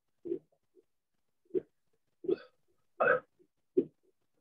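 Five short throaty bursts from a person, a little under a second apart, like hiccups or burps.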